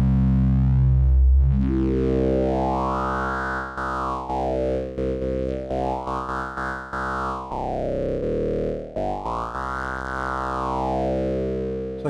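Modular synthesizer drone, mixed oscillator waveforms run through a Moog Mother-32 filter and a Doepfer A-106-6 XP filter. It holds one low note, dark for the first second or so, then its brightness sweeps slowly up and down three times, about three and a half seconds per sweep.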